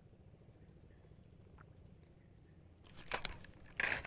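Faint low background, then from about three seconds in a series of short scraping and knocking handling noises as a fishing rod and its spinning reel are grabbed, the loudest one just before the end.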